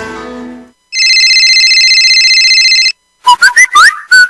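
The tail of a music jingle fades out, then a telephone ring sound effect rings steadily with a fast flutter for about two seconds. Near the end come several quick rising whistle-like chirps.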